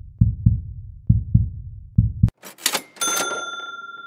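Heartbeat sound effect: low double thumps, lub-dub, about once a second, three pairs. Then a short swish and a bright bell-like ding about three seconds in that rings on.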